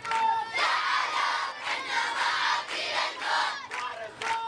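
A large crowd of men and boys chanting loudly in unison and clapping along, answering a single lead chanter, whose voice is heard at the start and again near the end.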